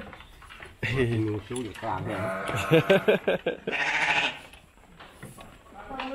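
Week-old premature Texel lamb bleating repeatedly: a run of loud, wavering calls lasting about three seconds, starting about a second in and dying away before the last second or two.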